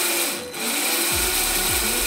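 Small electric motor of a WLtoys A959 RC buggy running its exposed metal drive gears, a steady mechanical whir; from about a second in a low tone falls over and over.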